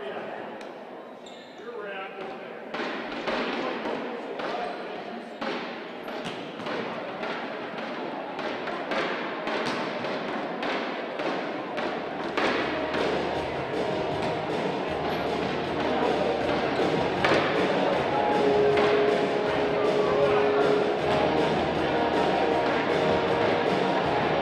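Gymnasium ambience during a timeout: a murmur of voices with repeated sharp knocks on the court. Music comes up about halfway through and grows louder.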